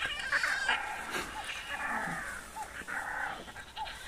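Tiny lion cubs calling with a string of short, high-pitched mewing calls, one after another.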